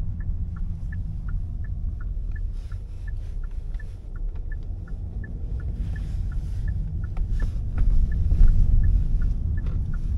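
A car's turn-signal indicator ticking steadily, about three clicks a second, over the low rumble of the car rolling along heard from inside the cabin; the rumble grows louder near the end.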